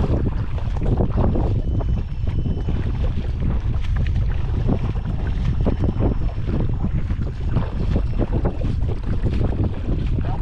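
Heavy wind buffeting the microphone, with irregular splashes and sloshing of shallow water as a kayak is towed through it.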